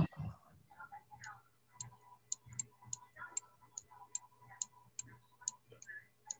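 Computer mouse clicking faintly and regularly, about three clicks a second, as a document is scrolled down on screen.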